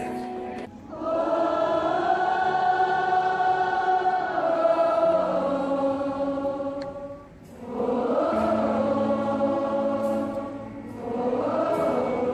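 A large concert crowd singing a slow worship song together with music, in three long phrases of held notes.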